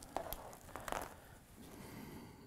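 A coiled plastic Ethernet patch cord handled in the hands: faint rustling and a few light clicks and taps in the first second.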